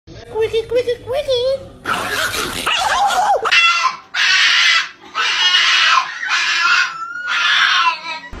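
A Boston terrier crying out in a series of about five high-pitched cries, each just under a second long, starting about three and a half seconds in. The first seconds hold a wavering voice-like sound.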